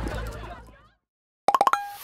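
Scene audio with voices fades out within the first second; after a short silence, a brief electronic jingle of about five quick popping notes ending on a held tone: the channel's end-card sound logo.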